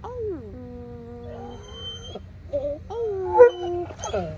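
A Dogo Argentino whining and howling in long, wavering, drawn-out tones that rise, hold and fall, with one louder, sharp cry a little past three seconds in.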